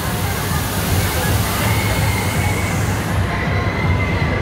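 Steady, loud rushing background din of a large indoor climbing hall, with a low hum beneath it and a faint high tone; the upper hiss falls away about three seconds in.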